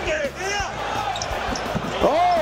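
Basketball game court sound over an arena crowd: sneakers squeaking sharply on the hardwood in quick short squeals, with the ball thumping on the floor.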